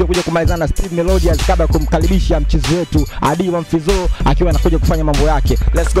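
Hip hop track with a man rapping in Swahili over a trap beat: deep held bass notes that drop out briefly about a second in and return, under drum hits.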